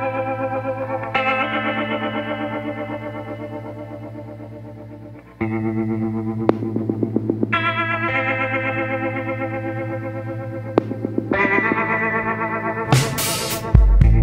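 Background music: sustained instrumental chords with a chorus-like effect. They break off briefly about five seconds in, then resume and get louder, with sharp hits near the end.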